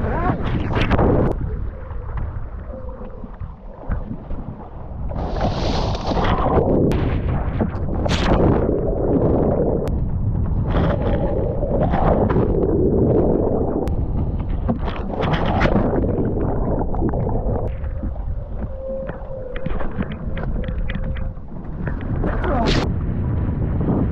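Wind rumbling on the microphone over rushing, splashing water, swelling and fading in several surges.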